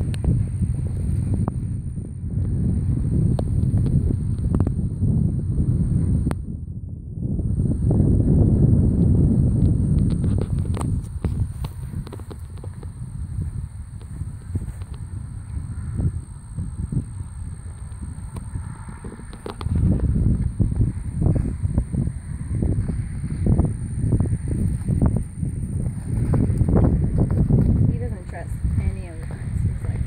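Wind buffeting the microphone in gusts, with a brief lull about six seconds in and a faint steady high-pitched whine above it.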